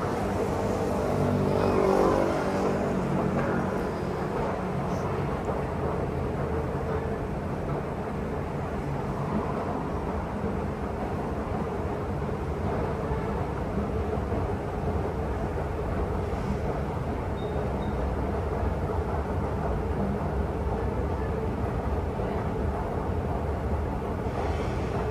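Steady ambience of city traffic and a running escalator's machinery hum, swelling louder for a moment about two seconds in.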